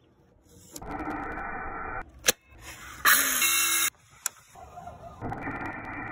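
Short, hard-cut bursts of woodworking noise: the loudest is a saw cut lasting under a second near the middle, between stretches of softer hiss. Sharp single clicks fall between them.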